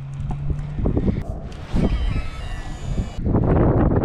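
Wind buffeting the microphone and choppy water against a kayak hull, with faint thin high tones in the middle and a louder rush of wind and water near the end.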